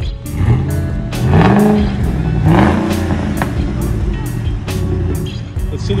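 Pickup truck engine revved two or three times in quick rising sweeps during the first three seconds, then running steadily, over background music with a steady beat.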